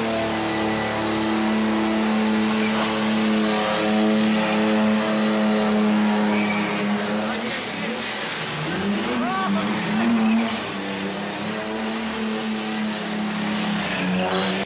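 Twin-turbo diesel engine of a 1949 Ford F1 race truck held at high revs in a steady drone during a smoky burnout. It breaks off briefly about eight seconds in, revs back up and holds again.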